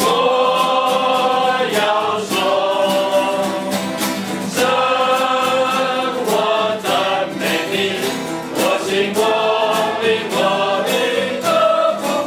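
A small group singing a worship song together, accompanied by three strummed acoustic guitars.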